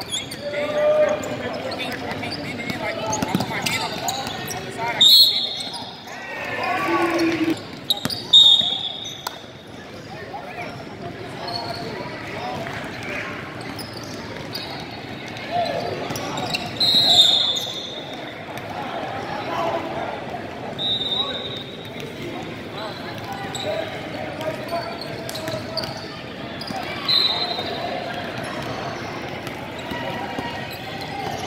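Basketball being dribbled on a hardwood gym floor, with several short high-pitched squeals of the kind made by sneakers or a referee's whistle, over the chatter of players and spectators in a large gym.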